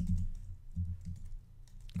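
A computer keyboard being typed on: irregular keystrokes in short runs, each with a dull low knock.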